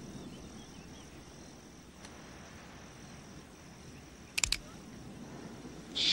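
Quiet outdoor ambience with a faint, steady high insect-like tone and a few faint chirps. A brief, sharp mechanical click comes about four and a half seconds in.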